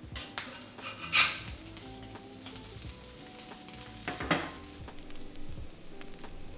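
Shredded pork carnitas and corn tortillas sizzling on a hot stovetop griddle, with two louder swells, about a second in and about four seconds in.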